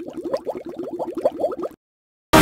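A bubbling sound effect: a quick run of short blips, each rising in pitch, about ten a second, that cuts off suddenly near the end.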